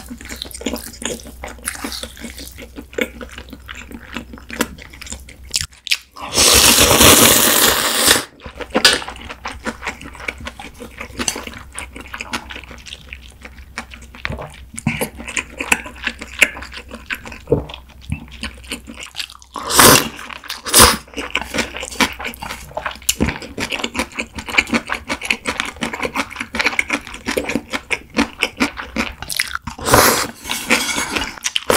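Close-miked eating of naengmyeon cold noodles: steady wet chewing and mouth clicks. A long, loud slurp starts about six seconds in and lasts about two seconds. Shorter loud slurps come about twenty seconds in.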